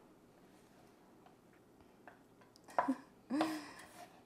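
Quiet kitchen room tone with a few faint light clicks, then two short voice sounds, a murmur or hum, in the last second or so.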